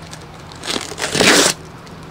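Packing tape ripped off a cardboard shipping box as it is pulled open: a rasping tear that builds for about a second and stops abruptly.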